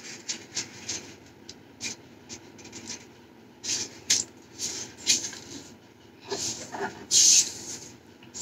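A sheet of origami paper being folded and creased by hand: scattered short rustles and crinkles as it is bent over and pressed along the fold, with a louder rustle about seven seconds in.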